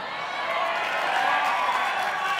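Audience applauding and cheering in a hall, swelling in the first half second and then holding steady, with a few voices calling out over it.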